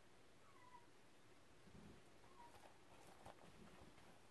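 A cat meowing faintly twice, short falling calls about half a second and two seconds in. Faint clicks of the plastic Blu-ray case being turned over come in the second half.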